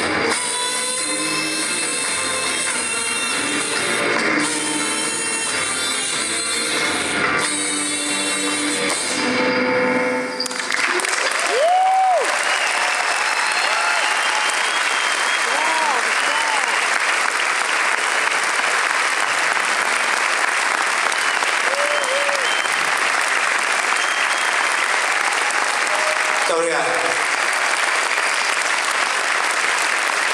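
A live band's music ends abruptly about ten seconds in, and a concert audience breaks into steady applause, with a few shouts from the crowd.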